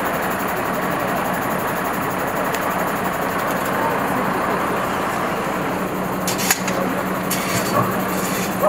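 A vehicle engine idling steadily, a constant low hum over busy city street noise, with a single sharp click about six and a half seconds in.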